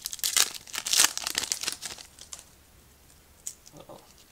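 The shiny foil wrapper of a trading-card pack being torn open and crinkled by hand. It is loudest in the first two seconds, peaking about a second in, then dies down to a few faint crinkles near the end.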